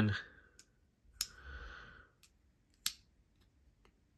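A small folding knife being flicked by its thumb stud, with sharp snaps of the blade about a second in and near three seconds, and softer clicks between. The detent is very light.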